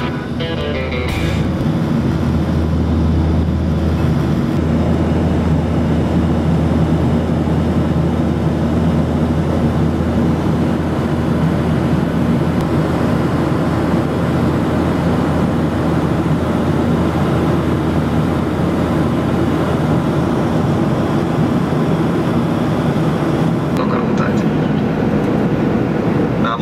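Steady jet engine and airflow noise heard inside the cabin of a Boeing 737-900 in flight, a loud even drone with a strong low hum. Background music fades out about a second in.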